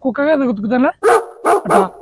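A man talking, then a dog barking three times in quick succession in the second half.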